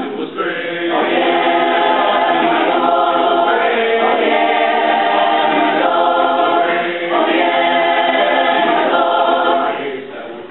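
Mixed choir of young men's and women's voices singing sustained chords in phrases, with short breaks between them, ending just before the close.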